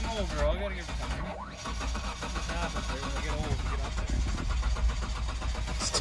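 Mitsubishi SUV engine idling steadily just after being coaxed into starting, with a cold-start-like idle.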